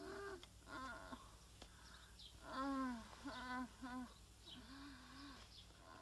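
Faint, repeated moans of an elderly woman sick with a high fever: short, pitched, some falling in pitch, coming every second or so.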